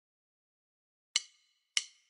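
Silence, then about a second in, two sharp percussion clicks with a short bright ring, about 0.6 s apart: the evenly spaced count-in that opens a music track.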